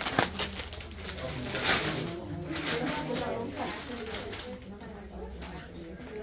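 Indistinct chatter of several people in a room, with a couple of sharp clicks at the start and a short rustle just under two seconds in.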